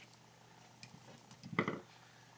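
Quiet bead handling: a faint snip as small scissors cut the thread of a strand of glass crystal beads, a few light ticks, then a brief louder rustle about a second and a half in as the loose crystals are handled.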